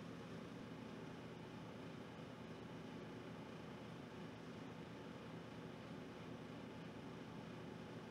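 Faint steady hiss with a low background hum and no distinct events: room tone from the microphone.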